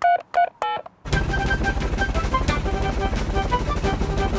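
Cartoon mobile phone keypad beeps, a quick run of short electronic tones as a number is dialled. About a second in they give way to the fast, even rotor chop of a cartoon helicopter under light music.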